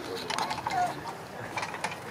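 Irregular small clicks and scratching of hands digging and scraping in dry, sandy dirt.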